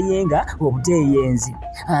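A voice reading aloud in narration, over background music.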